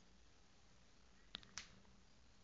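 Near silence: room tone, broken by two short sharp clicks about a quarter second apart, a little past halfway through.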